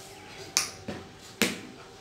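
Hands slapping long wet hair: two sharp slaps a little under a second apart, with a softer one between them.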